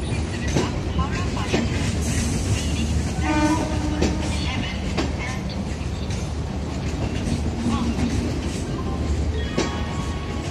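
Rajdhani Express LHB passenger coaches rolling past at low speed: a steady low rumble with irregular clacks of wheels over rail joints. A brief horn note sounds about three seconds in.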